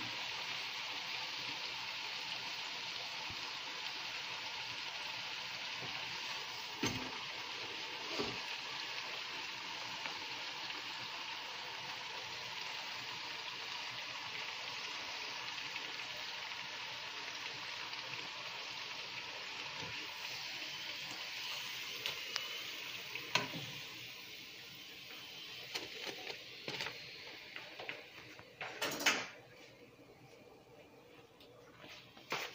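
Fry jack dough frying in hot oil in a skillet: a steady sizzle, with now and then a click of metal tongs against the pan. The sizzle dies down near the end and gives way to a short, louder clatter.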